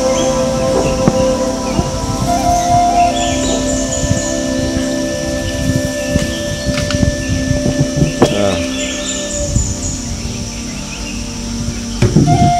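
Background music with long held notes, over scattered short knocks. Two brief clusters of high chirps come in, a few seconds in and again near the three-quarter mark.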